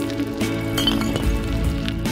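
Background music, with a glass bottle clinking on pavement about a second in.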